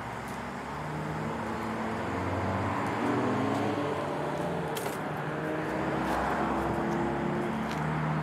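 Steady outdoor background noise with the hum of a motor vehicle engine, its pitch shifting slightly.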